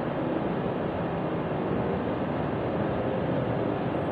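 Steady background noise: an even hiss and rumble that holds at one level throughout.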